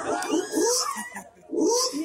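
A stage actor's voice through the microphone, drawn out and without clear words, with two short hissing sounds about a second apart.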